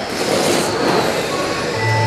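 A pack of electric RC race trucks with 21.5-turn brushless motors running laps on a carpet oval: a steady high motor whine over tyre and running noise.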